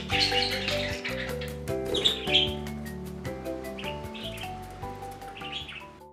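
Budgerigars chirping several times over light background music, which fades out near the end.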